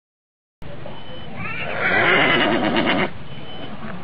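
A horse whinnying once, a loud wavering call of about a second and a half.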